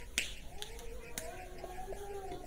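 A sharp click from a whiteboard marker just after the start, then two fainter clicks, over a faint wavering squeak of marker on whiteboard.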